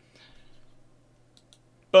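A pause in a man's speech: a faint breath, two small clicks, then the start of a spoken word at the very end.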